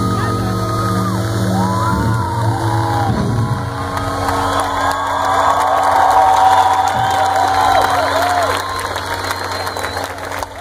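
A live band's last held notes ringing through the stage PA, fading after the first few seconds, while a large crowd cheers and whoops.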